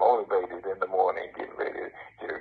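Speech only: a person talking with thin, band-limited sound, as if heard through a phone line.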